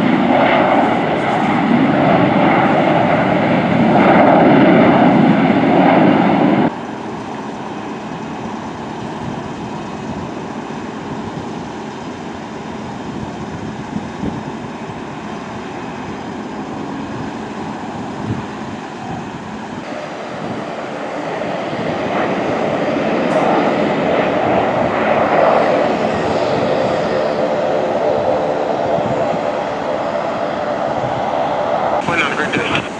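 Jet aircraft engines at an airport: a loud rumble that cuts off abruptly about seven seconds in, then a quieter steady background hum. From about twenty seconds in, a jet's sound builds again with a steady whine.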